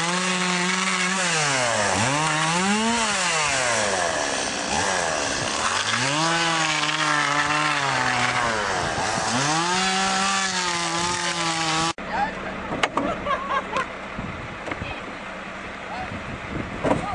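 Two-stroke chainsaw cutting a fallen log, its engine pitch sagging under load and rising again several times. It breaks off abruptly about twelve seconds in, leaving quieter outdoor background.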